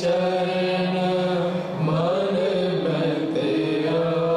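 Sikh Gurbani kirtan: a woman sings a devotional hymn over sustained harmonium chords, with tabla accompaniment. There is a short break between phrases a little before the middle.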